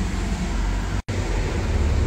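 Porsche convertible's engine idling, a steady low rumble heard from inside the open-top cabin. The sound drops out for an instant about a second in.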